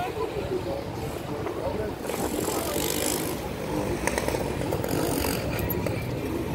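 People's voices talking in the background over a steady low rumble, with brief hissy rushes a couple of times.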